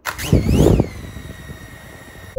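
ZLL SG907 Max drone's brushless motors starting up and spinning its propellers on a table. A loud rush in the first second, then a steady whine whose pitch wavers at first and then holds.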